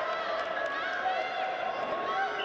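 Several people shouting and calling over one another in a wrestling arena, with no single voice standing out.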